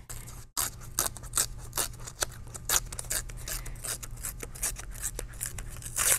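Paper being torn by hand along the edge of an envelope tear template, in a quick run of short tears, each a small crisp rip, a few a second, with a brief pause about half a second in.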